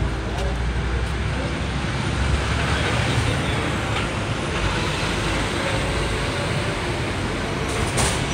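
Steady outdoor background noise with a low, uneven rumble throughout.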